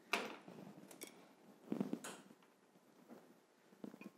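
A few faint clicks and light taps of small glass bottles and tools being handled on a table, the loudest about two seconds in.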